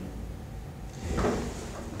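Pause between speakers: low, steady room background with one brief soft noise about a second in.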